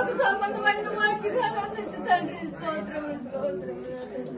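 Several women praying aloud at the same time, their voices overlapping in one continuous stream of speech.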